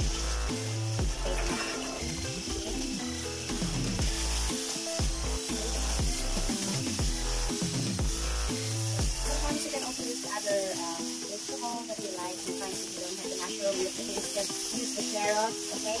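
Pork and mushroom slices sizzling as they stir-fry in a nonstick wok, pushed around with a spatula, under background music whose pulsing bass drops out a little past halfway.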